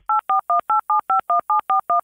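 Touch-tone telephone dialing: a quick run of keypad beeps, about five a second, each beep a steady two-pitch tone that changes from key to key.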